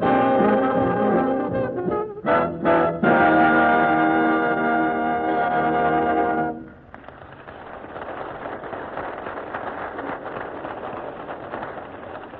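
Dance band with brass, trombone prominent, finishing a number: a few short chord stabs, then a held final chord that stops about six and a half seconds in. A steady noisy rush follows. All of it comes through a muffled, poor-quality 1939 radio recording.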